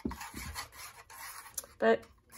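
A drinking straw stirring blue paint, dish soap and water in a disposable bowl, rubbing and scraping against the bowl, stopping near the end for a short spoken word.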